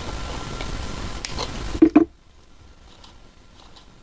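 A steady low rumble with a single light click about a second in and a short grunt-like voice sound near the middle. The rumble then stops abruptly, leaving much quieter background with only faint small clicks.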